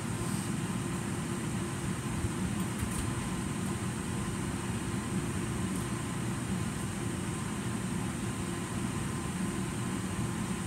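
Steady hum and rush of air from a running ventilation fan, even and unbroken, with a few faint ticks.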